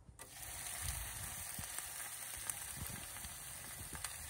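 Bacon strips sizzling as they are laid into a cast iron skillet. The sizzle starts suddenly a moment in and then holds steady.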